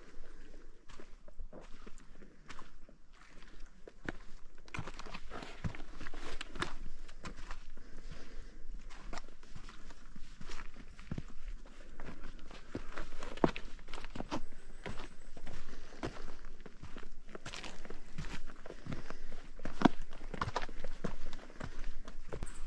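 A hiker's footsteps on a dirt, gravel and rock forest trail, walking downhill: irregular crunching steps, a few a second, sparse at first and steadier after about five seconds.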